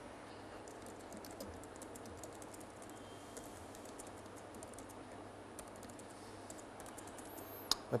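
Faint keystrokes on a computer keyboard: irregular runs of quick clicks as a shell command is typed.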